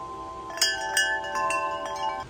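Large wind chime of long metal tubes set swinging by hand, the tubes ringing together in several overlapping tones, with fresh strikes about half a second in, at one second and around a second and a half.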